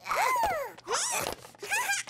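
Cartoon sound effects and a chick character's wordless squeaks: short scratchy rubbing bursts mixed with sliding squeaky tones that rise and fall, and a quick wobbling squeak near the end.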